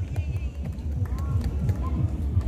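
Backing track for a stage song playing through the PA, a steady low beat with faint voices over it, leading into the song's guitar intro.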